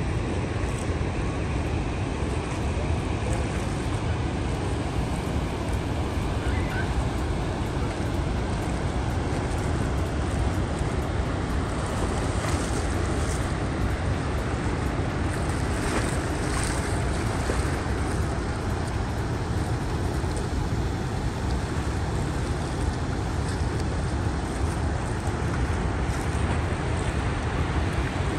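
Steady rush of the fast, churning Rhine below the Rhine Falls, with a low rumble of wind on the microphone.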